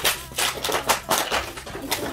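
Empty crushed aluminium cans and plastic bottles clattering and crinkling as they are handled and sorted from a pile, an irregular run of light rattles about four a second.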